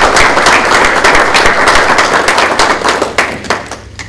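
A small group of people applauding with hand claps; the clapping thins out and stops near the end.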